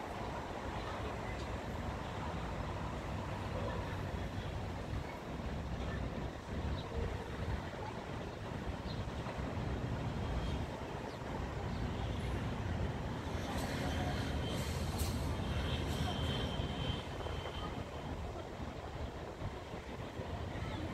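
Street traffic heard from above, dominated by the steady low rumble of truck engines running. Partway through, a thin high-pitched tone and some rattling clatter come in for a few seconds.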